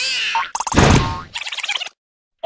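Cartoon sound effects: a short springy boing with gliding pitch, then a loud noisy hit about half a second in, and a brief chattering squeak near the end.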